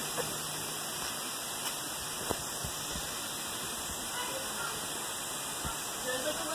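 Steady rush of flowing stream water through a rocky gorge, with a few faint knocks.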